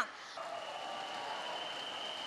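Audience applause in a large hall: an even patter of many hands clapping that starts about half a second in and keeps up steadily.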